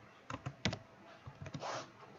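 Computer keyboard keystrokes: a handful of separate key clicks, the loudest about two-thirds of a second in, followed near the end by a short soft hiss.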